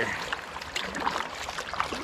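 Water splashing beside a kayak over the steady wash of a flowing river, as the kayaker drops anchor to hold against the current.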